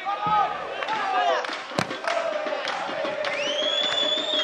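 Football crowd shouting and cheering, many voices overlapping. There is a sharp thud a little under two seconds in, and a long high whistle starting near the end.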